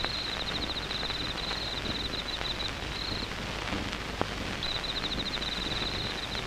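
Night insects chirping in a fast, high, pulsing trill over a steady background hiss. The trill breaks off for about two seconds in the middle, and there is one brief click about four seconds in.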